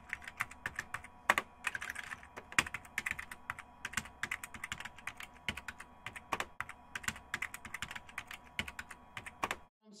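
Keyboard typing: a quick, irregular run of sharp keystroke clicks, several a second, over a faint steady hum.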